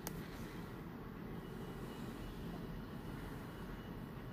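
Steady low background rumble, with one sharp click just after the start.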